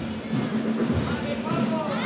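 A Cádiz carnival coro, a large male choir, singing together in chorus with music, many voices holding long notes.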